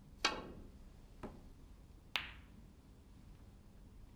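A snooker shot: the cue tip strikes the cue ball with a sharp click, then about one and two seconds later come two more clicks as the balls travel and meet. The middle click is soft and the last is a loud, crisp ball-on-ball clack.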